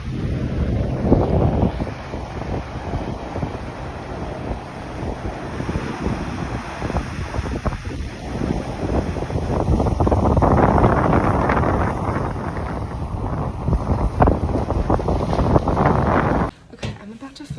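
Ocean surf breaking and washing up around shore rocks, with strong wind buffeting the microphone; the rush swells loudest a little past the middle.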